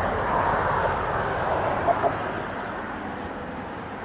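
Steady rushing noise of a passing vehicle, slowly fading away.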